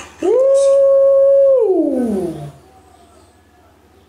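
A man's long drawn-out 'ooh' exclamation: held on one pitch for over a second, then sliding steadily down and fading out about two and a half seconds in.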